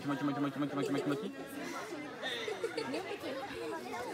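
Overlapping chatter of several people talking, with one voice held on a steady note for about the first second.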